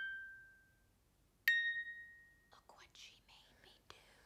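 Sparse, slow notes of a wind-up music box. One note fades out at the start, and a single high note rings out about a second and a half in and dies away. Faint breathy whispering follows, with a sharp click just before the end.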